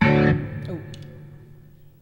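A guitar chord struck once, loudest at first, then ringing and fading away over about two seconds.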